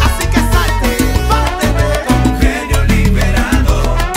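Salsa orchestra playing an instrumental passage of the song, with no vocals: a strong repeating bass line under steady percussion and sustained melodic parts.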